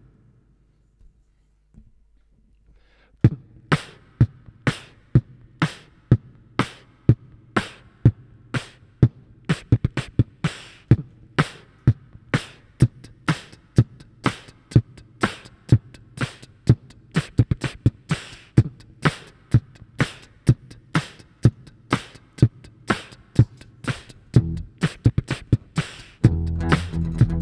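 Beatboxed drum beat into a microphone, starting about three seconds in: evenly spaced kick and snare sounds at about two hits a second. A low steady tone joins near the end.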